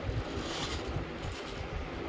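Rumbling, rustling noise close to the microphone as a net skirt swings past it, with brief hissy rustles about half a second and a second and a half in.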